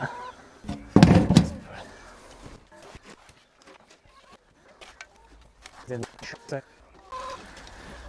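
Domestic hens clucking briefly, a few short calls about six seconds in, after a loud thump about a second in.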